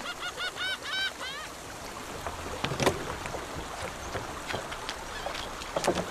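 Outdoor waterside ambience: a quick run of short chirping bird calls, about five a second, in the first second and a half. A few sharp knocks follow, one near the middle and one near the end.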